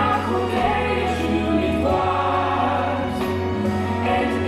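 Choral music: a choir singing held notes over a steady instrumental accompaniment with a low bass line.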